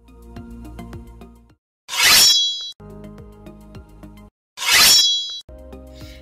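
Background music with steady tones, interrupted twice by a short, loud editing sound effect: a bright noisy burst with a high ringing chime, each lasting under a second, about three seconds apart and the loudest things here.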